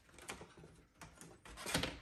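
Quiet handling noises on a tabletop: a few soft clicks and rustles, the loudest a short rustling scrape about three-quarters of the way through.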